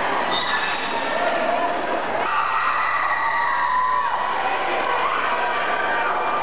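Crowd of spectators in a gymnasium: a steady din of many voices shouting and calling at once.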